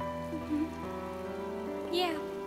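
Soft background score of held notes, changing chord about a second in, over steady falling rain.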